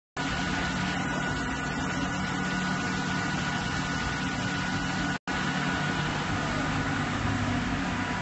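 Construction-site machinery running steadily: a constant engine drone with a thin, steady whine above it. The sound drops out for an instant about five seconds in, then carries on unchanged.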